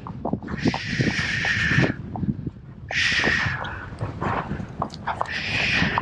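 A rider hushing a nervous horse with three long 'shh' sounds, about a second apart, to settle it, over the knock of its barefoot hooves on a tarmac lane.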